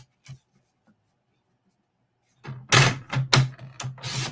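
Sliding blade of a paper trimmer cutting a one-inch strip from a cardstock card base: a light click just after the start, a quiet stretch, then a run of short, loud cutting strokes in the last second and a half.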